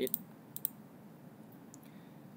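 Computer mouse clicking: a few light clicks in close pairs, about half a second in and again near the end.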